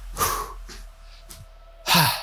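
A man breathing out hard twice while jogging in place, once just after the start and again near the end, with soft footfalls on a rubber floor between the breaths.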